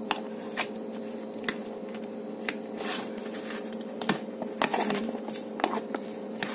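Lidded plastic food container of chopped vegetables being shaken and tipped to mix it, with irregular knocks and rattles of the contents and the container, over a faint steady hum.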